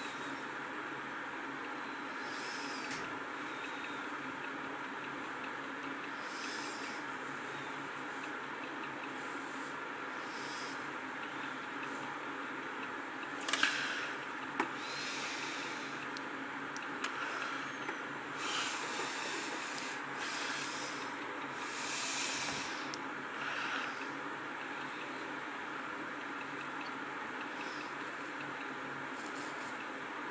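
Steady background hum with short soft hisses coming and going every second or two, and a couple of sharp clicks about halfway through.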